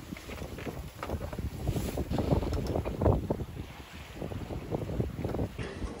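Wind buffeting the microphone aboard a sailboat under way at sea, rising and falling unevenly in gusts.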